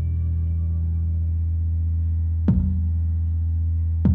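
Electric bass guitar through an amplifier letting a low note ring, then plucking a new low note about two and a half seconds in that also rings on.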